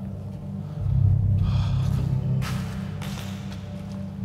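Dark background music: a low, steady drone that swells about a second in. Two or three brief rustles sound over it in the middle.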